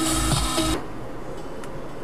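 Car starter motor cranking with a rapid pulsing churn, cutting off abruptly about three quarters of a second in as the engine catches, followed by the engine running quietly.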